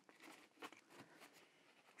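Near silence, with a few faint soft rustles and taps from a paper towel being pressed down by hand onto sprayed card.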